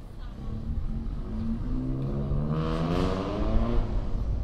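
A motor vehicle's engine accelerating on the street, its pitch rising steadily for about three seconds and loudest near the end, over a constant low traffic rumble.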